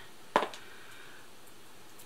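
A single short click about a third of a second in, against quiet room tone.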